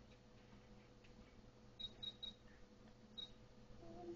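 Near silence over a faint steady electronic hum, broken by short high beeps from an ultrasound machine: three in quick succession about two seconds in, then one more a second later.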